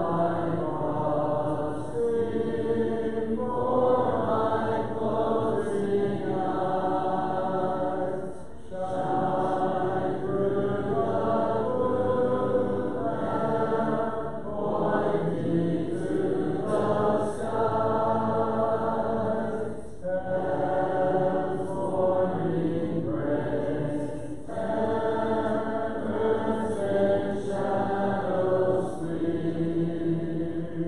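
Church congregation singing a hymn a cappella, with held notes and brief pauses between lines.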